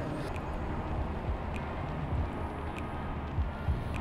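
Steady low rumble of outdoor background noise, with a few faint ticks.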